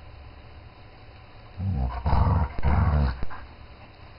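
German Shepherd growling in three low growls run close together, starting a little over a second and a half in and lasting about a second and a half.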